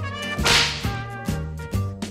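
A sharp whip-crack swoosh sound effect about half a second in, laid over upbeat background music.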